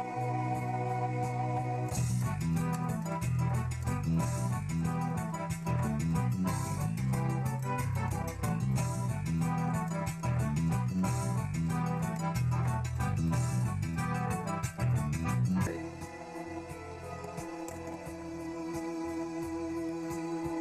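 Two-manual electronic organ played solo. It opens on held chords, then from about two seconds in a lively passage runs over a bass line and the organ's built-in drum rhythm, which stops near sixteen seconds, leaving soft sustained chords.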